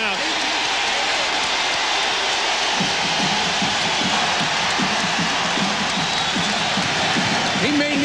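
Basketball arena crowd cheering in a steady loud roar as the home team pulls ahead on a scoring run and the visitors call a timeout. From about three seconds in, shouting or chanting voices rise through the roar.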